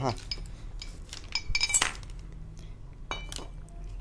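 Metal engine parts being handled: an aluminium motorcycle cylinder block set down on a tile floor and a piston picked up, with a few sharp ringing clinks about a second and a half in and again about three seconds in.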